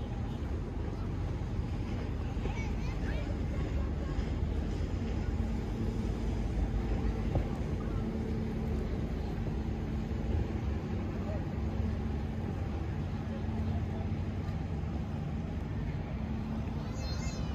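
Waterfront outdoor ambience: a steady low rumble, with a faint engine-like drone coming in about halfway through and distant voices of passers-by.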